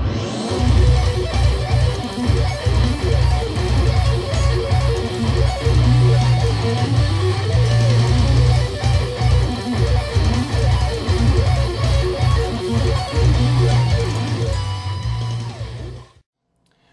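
Distorted electric guitar playing fast sweep-picked arpeggios over a heavy low end. It stops abruptly at the end.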